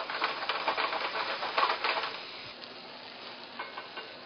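Mahi mahi and its wine, tomato, onion and caper sauce sizzling in a hot sauté pan as butter melts in, with fine crackling that is busiest for the first two and a half seconds and then dies down.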